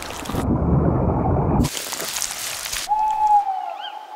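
Edited nature sound effects: a rain-like rushing noise with low rumble that changes abruptly twice. About three seconds in, a short clear call slides slightly down in pitch, followed by a faint high chirp.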